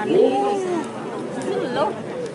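Several people's voices talking over one another, the words indistinct.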